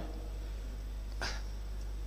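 Steady low electrical hum from the hearing room's microphone and sound system, with a brief soft hiss about a second in.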